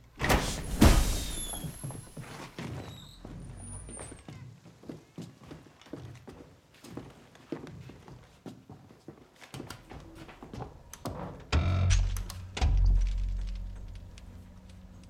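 A loud thunk of a heavy door being forced open, followed by scattered knocks and footsteps. About eleven and a half seconds in, a deep hum swells up for a couple of seconds, over a low film score.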